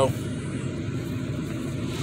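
Steady low rumble inside a car's cabin, with no change through the pause.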